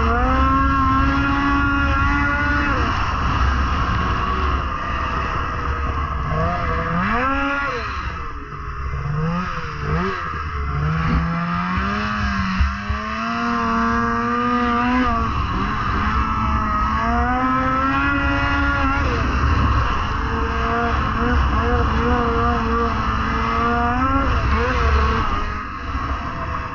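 Polaris IQR 600R snowmobile's two-stroke twin engine running at speed, its pitch rising and falling again and again as the throttle is opened and eased, over a steady rush of noise.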